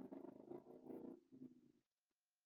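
Near silence: a very faint low murmur that stops just before the end.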